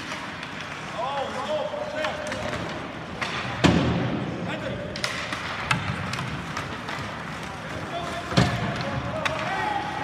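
Ice hockey play heard from the stands of a rink: sharp cracks of puck and sticks against the boards and glass, the loudest about three and a half seconds in and another about eight and a half seconds in, over the murmur and calls of spectators.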